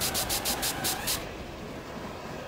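Steam-train sound effect: a hiss of steam pulsing several times a second, stopping a little over a second in, leaving a low rumble.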